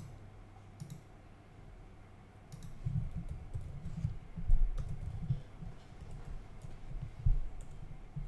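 Faint computer keyboard typing and mouse clicks: a sparse run of light key clicks with soft low thuds, starting about two and a half seconds in after a couple of isolated clicks.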